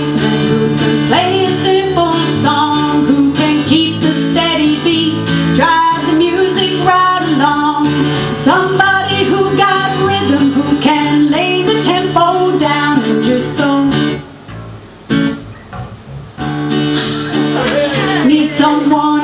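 Live acoustic duo: a woman singing over her strummed acoustic guitar and an electric bass guitar. The music drops away for about two seconds near the end, then comes back in.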